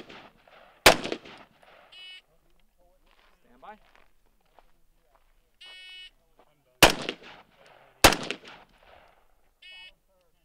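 AR-15 carbine shots on a rifle range: one shot about a second in, then two shots about a second apart near the end, each followed by a short echo. Short high electronic beeps of a shot timer sound three times between them, the start signal for each string of fire.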